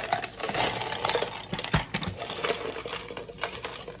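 Ice cubes poured from a plastic container into a plastic tumbler of drink, clattering and clinking in a steady run.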